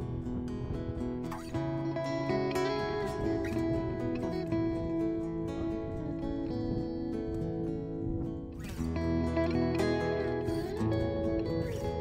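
Background music with plucked string notes.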